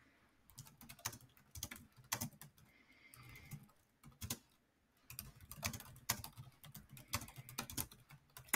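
Faint computer keyboard typing: runs of quick, irregular keystrokes with a brief pause about halfway through.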